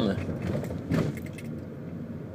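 Steady low hum inside a car cabin, with a few light clicks about a second in.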